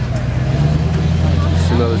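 Chevy Duramax V8 turbodiesel pickup engine running steadily under throttle, getting louder in the first half-second.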